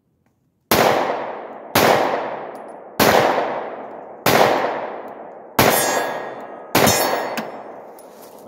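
Six pistol shots from a 9mm Glock, fired at a slow even pace of about one every 1.2 s, each with a long echoing decay.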